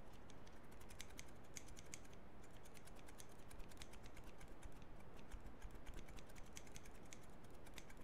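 Pair of scissors snipped open and shut rapidly in the air, close to the microphone: a quick run of sharp blade clicks, several a second.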